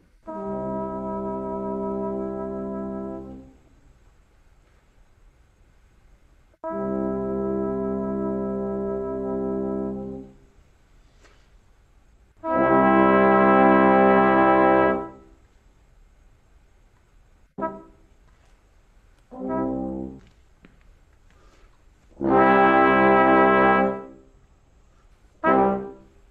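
A small brass ensemble playing the same chord seven times, each entry cued by a conductor's upbeat: two medium-loud held chords of about three seconds, a louder one of about two and a half seconds, two short ones, another loud held one, and a short one near the end. With no notation, the players judge each chord's length and loudness from the upbeat alone.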